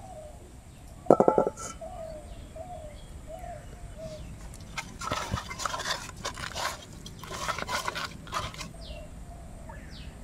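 Wet rubbing and mixing of fish pieces by hand with turmeric and spices in a clay bowl, in bursts over the second half. Birds call repeatedly in the background, with one loud, short call about a second in.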